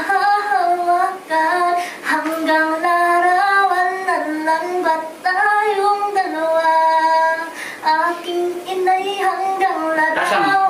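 A woman singing unaccompanied in a high voice, holding long notes and running up and down in pitch between them, with short breath breaks, improvising a song on the spot.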